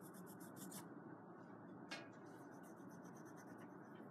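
Faint graphite pencil strokes scratching across drawing paper. A quick run of short hatching strokes comes in the first second, a single stroke about two seconds in, then more light strokes.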